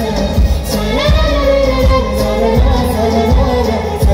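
Live Bollywood song over concert loudspeakers: a woman's voice comes in about a second in with held, gliding notes, over a band with a heavy, regular bass beat.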